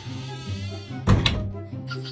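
A door shutting with a single thunk about a second in, over steady background music.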